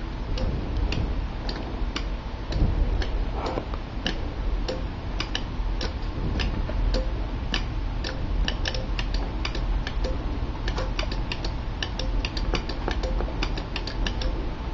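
Mechanical relays on a RelaySquid relay board clicking as spotlights are switched on and off in quick succession: sharp, irregular clicks, a few per second, over a faint steady hum.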